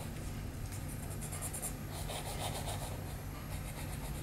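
Pencil scratching on sketchpad paper in a run of short, quick strokes, drawing lines, over a steady low hum.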